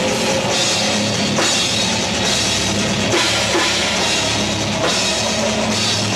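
A heavy metal band playing loud and steady, drum kit to the fore with bass drum and a constant wash of cymbals.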